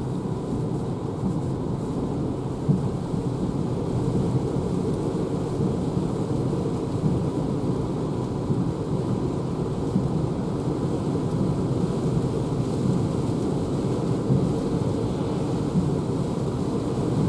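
Steady tyre and road noise heard inside the cabin of a Renault ZOE electric car driving on a wet road. It grows slightly louder as the car picks up speed.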